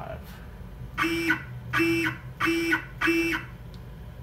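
Z-axis stepper motor of a Genmitsu PROVerXL 4030 CNC router whining through four short jog moves in quick succession, each a steady pitched buzz of under half a second, as the spindle is stepped down toward the Z limit.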